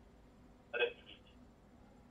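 A man's voice making one short syllable, about a second in, amid low room tone.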